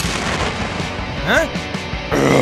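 Edited-in cartoon explosion sound effect, a noisy boom over background music, with a short rising-then-falling squeal about a second and a quarter in.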